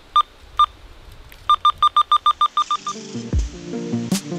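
Keypad beeps from a handheld radio as its buttons are pressed: two single beeps, then a quick run of about a dozen in a row. Background music comes in near the end.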